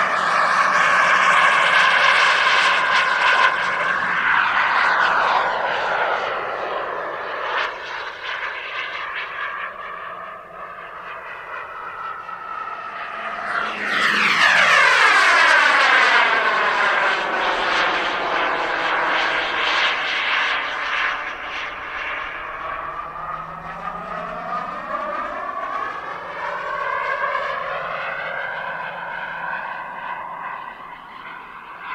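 Skymaster F-18C Hornet model jet's turbine engine flying past: a jet rush with a high turbine whine. It is loudest in the first few seconds and again about halfway through, where the whine rises and then drops as the jet goes by, fading between passes.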